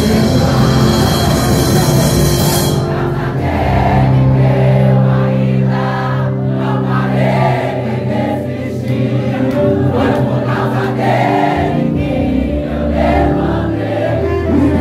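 Live gospel worship music: a male worship leader sings into a microphone over a band with electric guitars and keyboard, with group voices singing along. A cymbal wash fills about the first three seconds and then stops, leaving sustained keyboard chords under the singing.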